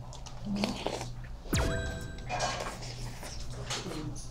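Background music under an edited TV sound effect: a quick falling sweep about one and a half seconds in, then a short held chime-like tone. Faint chewing from a mouthful of stew runs underneath.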